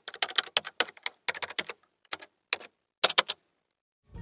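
Keyboard typing: a run of uneven key clicks, ending in a quick flurry of keystrokes a little after three seconds in.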